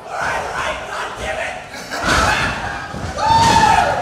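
Wrestling crowd yelling and cheering, with several voices shouting over one another and one long held yell near the end.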